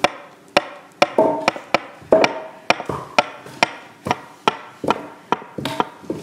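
Repeated sharp blows of a tool on wood at a steady pace of about two a second, each with a short ring: a wood-building sound effect of the kind laid under house-building scenes.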